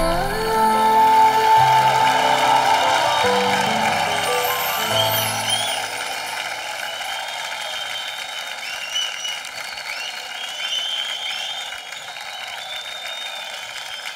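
Background music with held notes fades out over the first six seconds, while audience and judges applaud. The applause carries on alone after the music ends.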